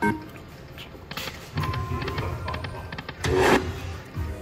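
Poker machine spinning its reels: electronic reel-spin music and tones, with a brief loud burst a little past three seconds in.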